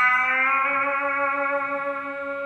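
A single clean electric guitar note from a Telecaster-style guitar, held and sustaining through the VoiceLive 3's compressor set to squash it. The note fades only slowly.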